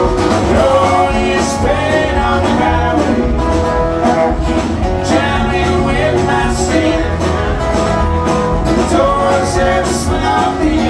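Live country-rock band playing an instrumental passage, with electric mandolin and acoustic guitar over a steady beat.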